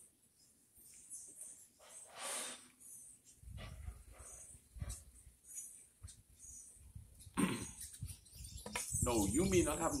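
Perlite poured from a plastic bucket onto compost in a wheelbarrow: a soft rustling hiss of the light granules, loudest about two seconds in, then a low rumble from about halfway. A man starts talking near the end.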